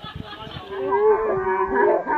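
Several children's voices in a long, drawn-out call that starts under a second in. Several held pitches slide against each other.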